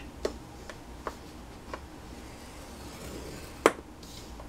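Light clicks and taps of a scoring stylus and cardstock on a plastic scoring board, about four faint ones in the first two seconds and one sharp, louder click near the end.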